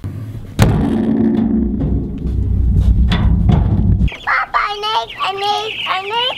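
A wheelbarrow being handled and rolled: a sudden bang about half a second in, then a loud low rumble and rattle that cuts off about four seconds in. After that, baby meat chicks peep rapidly in a plastic crate.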